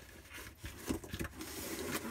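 Cardboard shipping box handled and its lid pulled open: cardboard rubbing and scraping, with a few short knocks around the middle.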